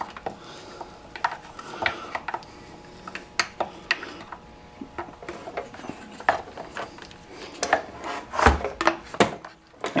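Steel hemostats clicking and scraping against the plastic fuel tank filler neck of a Poulan Pro 46cc chainsaw while fishing a new fuel line out through the fill hole. The sounds are irregular small clicks and rubs, with a few louder knocks near the end.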